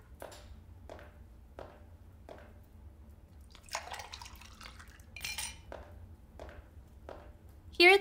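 Foley of a drink being poured: light clinks and knocks of glassware, with a short pour of liquid about four seconds in and a brighter glass clink just after.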